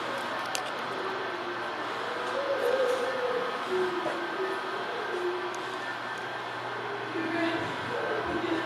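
Indoor hall ambience: distant people talking over a steady low hum.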